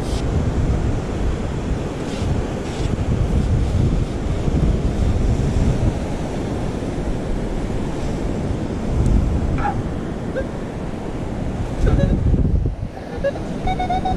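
Wind buffeting the camera microphone with a low, uneven rumble over the steady wash of surf, swelling in gusts about nine and twelve seconds in.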